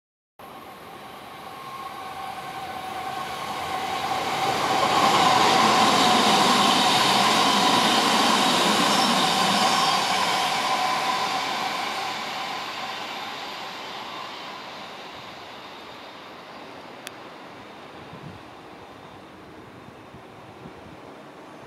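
An electric commuter train passes: it grows louder, is loudest for several seconds with a steady whine, then fades away as it goes by.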